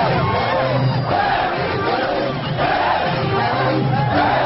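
Large concert crowd shouting and cheering together, many voices rising and falling at once, over live band music.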